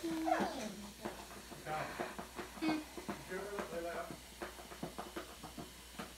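Muffled, unintelligible mumbling from a girl trying to talk with gauze packed in her mouth after wisdom tooth removal. It comes in short pitched bits, quieter than normal speech.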